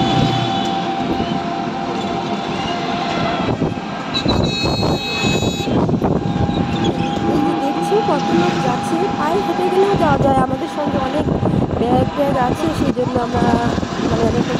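Traffic noise heard from a moving vehicle on a town road, with people's voices talking over it. A brief high-pitched tone sounds about four to six seconds in.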